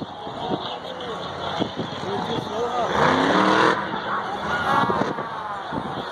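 Earth Shaker monster truck's engine revving, loudest about three seconds in as its pitch rises, over the hubbub of the stadium crowd and nearby voices.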